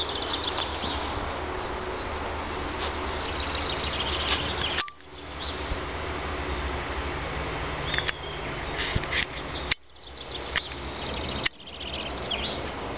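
Steady outdoor background noise with a low rumble, like wind on the microphone, and birds chirping now and then. It cuts out suddenly about five seconds in and twice near the end.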